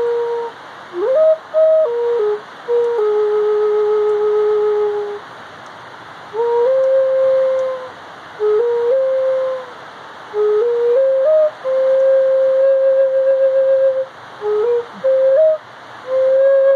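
A solo flute playing a slow melody: short phrases of held notes that slide up into pitch and step between a few nearby notes, with brief pauses between phrases and one long low held note a few seconds in.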